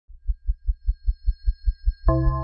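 Deep, evenly spaced bass thumps, about five a second, like a heartbeat, with faint steady high tones above. It is the pulsing sound design of a show's intro sting.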